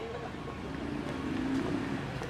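A motor vehicle engine running nearby, its low drone swelling a little around the middle, over outdoor background noise.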